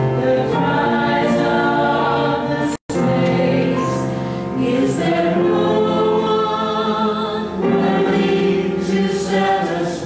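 Small mixed church choir singing a choral anthem in sustained notes, accompanied by piano. The sound cuts out completely for an instant about three seconds in.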